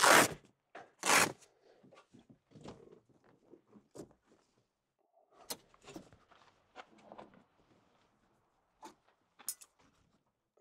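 Rooftop tent fabric zipper pulled closed in two quick strokes, the first right at the start and the second about a second in, followed by scattered light rustling and clicks as the tent fabric is handled.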